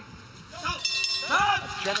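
Speech: a man's commentary voice comes in after a brief lull at the start.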